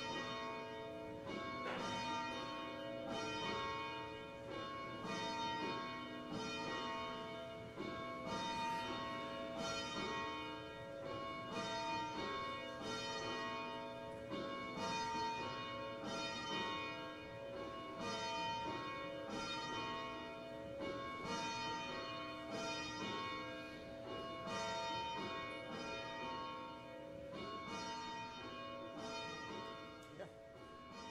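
Church bells ringing steadily, a new stroke about once a second with several pitches overlapping and ringing on.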